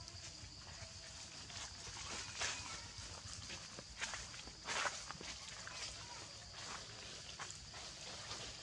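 Dry fallen leaves rustling and crunching under macaques moving across the forest floor, with a few louder crackles about 2.5 s, 4 s and 5 s in.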